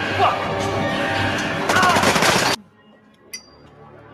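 Rapid, loud gunfire from a TV drama's shootout scene, many shots in close succession. It cuts off abruptly about two and a half seconds in, leaving quieter scene sound with a single faint click.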